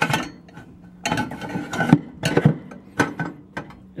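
Sheet-metal wood-chip loader tube of a Masterbuilt electric smoker, loaded with wood chips, scraping and clunking as it is pushed into the smoker's side port, in several short bursts.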